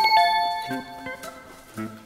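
Two bright bell-like chime notes struck one right after the other, the second a little lower, ringing out and fading over about a second; an edited-in sound effect, followed by soft, sparse background music.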